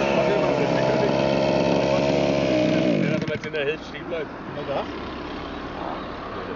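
Two-stroke petrol engine of a 1:5-scale FG RC car running at high, steady revs, then the revs fall away about three seconds in as the car slows and stops. Short exclamations are heard after it drops.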